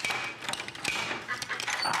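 Ladders being handled and put away: a quick, irregular run of clicks, knocks and light clanks of ladder parts.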